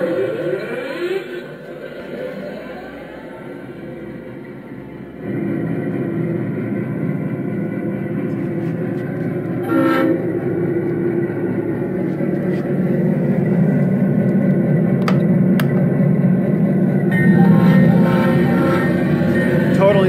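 Onboard sound system with subwoofer in a 1.6-inch scale GP9 locomotive, playing a simulated diesel locomotive start-up. A rising whine comes first, then the engine sound cuts in about five seconds in and runs steadily, with a short horn blast about ten seconds in, and it grows louder near the end.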